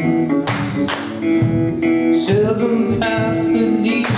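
Live blues band playing: slide resonator guitar with gliding notes over electric bass, with stomp-drum hits, and a man singing.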